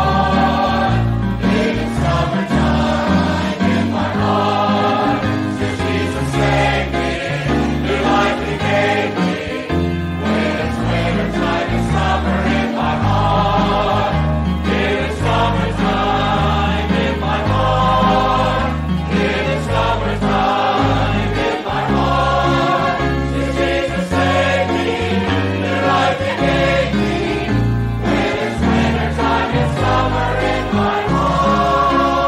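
A choir singing a gospel hymn with instrumental accompaniment, the bass stepping from note to note under sustained voices, continuing without a break.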